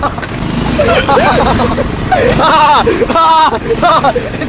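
Young people laughing and exclaiming in short excited bursts over the steady noise of a moving car.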